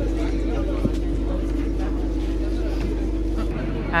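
Steady low hum of a passenger boat's engine running, with people talking faintly around it.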